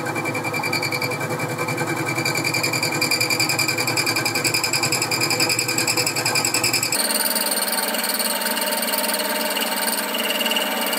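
Boxford lathe running an end mill across the face of a small nut held on the compound slide: milling in the lathe, a steady machining sound with a fast rhythmic pulsing and a high whine. About seven seconds in the sound jumps abruptly higher and loses its low hum, where the footage is sped up twice.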